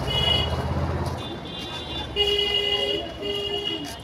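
Street traffic: a vehicle engine running close by for about the first second, then two horn blasts about two seconds in, each under a second long, with a short gap between them.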